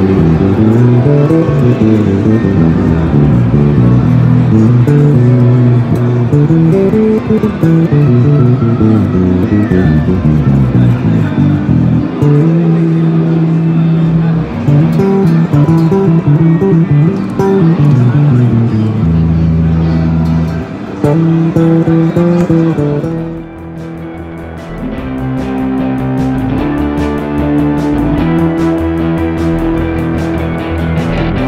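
Sandberg electric bass guitar playing a song: a busy run of low, changing notes, with a dip about three-quarters of the way through and then a quieter, higher passage.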